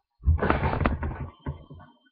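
Handling noise on a webcam microphone: low rumbling with a few sharp knocks in a burst of about a second, then two shorter bursts.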